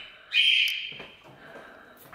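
Pet birds calling indoors: one loud, high, held call about a third of a second in, fading away over the following second.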